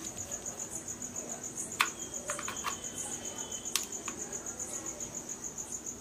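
Cricket chirping in a steady, evenly pulsed high-pitched trill, with a few sharp clicks from a power bank and its cable being handled and plugged in.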